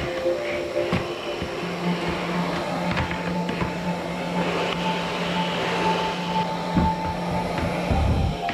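Canister vacuum cleaner running as its floor nozzle is pushed over a wooden floor, with a few knocks, under calm background music of slow held notes.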